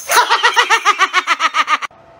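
A rapid snickering laugh, a quick even run of about seven short 'heh' sounds a second that slowly drops in pitch and cuts off suddenly just before the end.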